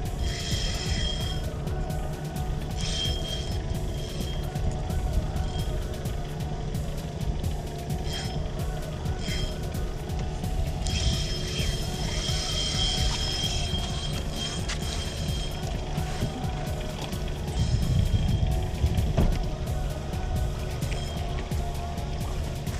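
Spinning reel's drag buzzing as a large little tunny pulls line off the spool. It comes in runs: about a second at the start, a short one near 3 s and a longer one from about 11 to 14 s. The fish is stripping so much line that the spool is running low. A low steady rumble of wind and sea lies under it.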